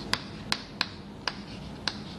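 Chalk tapping against a chalkboard while writing: five sharp clicks at uneven intervals.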